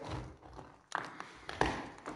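Two light taps, about a second in and again roughly half a second later.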